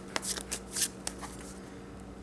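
Theory11 Union playing cards clicking and snapping as the deck is split into two packets and brought back together in the hands, several sharp card snaps in the first second, then softer handling.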